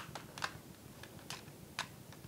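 Plastic clicks from the case of a Toshiba Regza TV remote as its snap-fit clips are worked apart by hand: one sharp click at the start, then three fainter ones.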